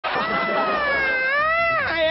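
A man's long, high wailing cry: one held note that sags a little, rises again and drops off near the end, leading straight into shouted preaching.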